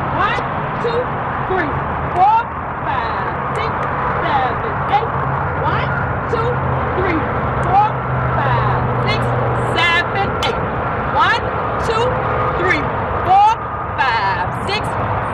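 Birds calling outdoors: many short whistled chirps that sweep up or down in pitch, with a few quick warbling calls, over a steady low hum.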